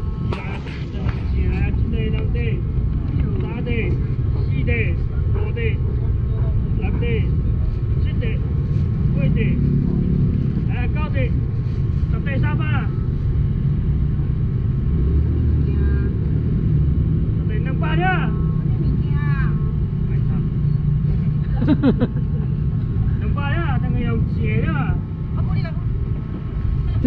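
Background chatter from a street-market crowd, scattered voices overlapping, over a steady low rumble.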